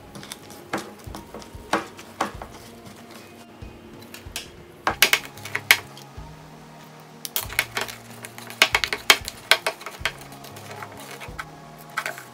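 A spatula and a plastic spoon tapping and scraping against a plastic mixing bowl as sticky bread dough is scraped off them: scattered sharp clicks, in busier clusters around the middle and after, over faint background music with a low bass line.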